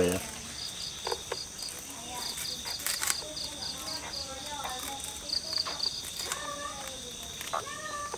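Crickets chirping: short high-pitched pulses in groups of about three, repeating steadily, over a faint steady high hum and quiet murmured voices.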